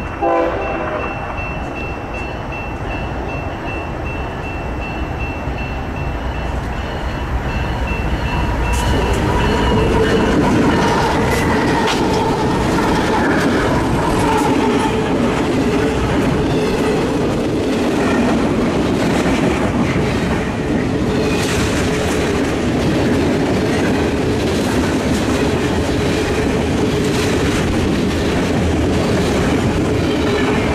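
BNSF freight train passing close by: a short blast of the diesel locomotive's horn right at the start, then from about nine seconds in the steady rumble of freight cars rolling past with wheels clattering over the rail joints.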